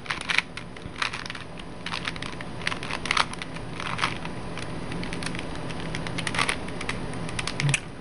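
A Rubik's Cube being twisted quickly by hand: a rapid, irregular run of plastic clicks and clacks as its layers turn, with a few louder clacks among them.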